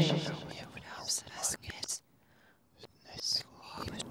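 Faint whispering voice after a spoken phrase trails off, broken by a short dead silence in the middle.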